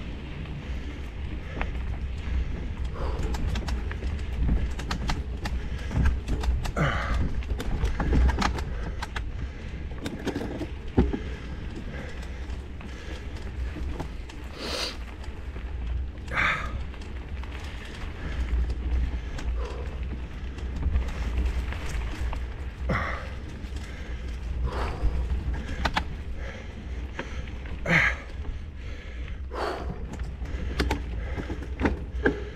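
Movement along a dry dirt trail covered in leaves and pine needles: a steady low rumble on the microphone, with scattered, irregular crunches and clicks from the leaf litter.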